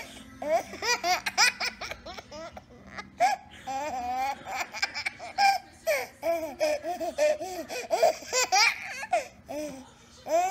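A baby laughing in repeated short bursts of high, rising-and-falling peals, with a couple of brief pauses.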